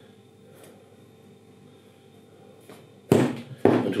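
A square plastic plant pot full of compost knocked down twice on a tabletop near the end, two sharp thumps about half a second apart. The pot is tapped to settle and firm the compost around a potted-up tomato seedling.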